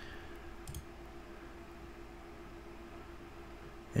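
Two faint computer-input clicks in the first second, submitting a login, over a quiet, steady low hum of room tone.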